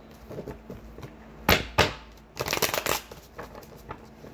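A deck of tarot cards being shuffled: two sharp card snaps about a second and a half in, then a quick fluttering run of card flicks just before the three-second mark.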